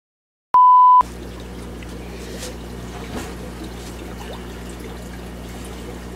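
Silence broken about half a second in by a short, loud, single-pitched electronic beep. Then steady trickling water over a low hum, from the running water and air equipment of a room full of aquarium tanks.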